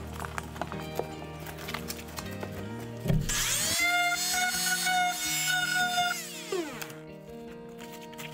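Dremel oscillating multi-tool running as it cuts into polystyrene foam: a high whine that rises as the motor starts about three seconds in, holds steady for about three seconds, then falls away as it stops. Background music plays throughout.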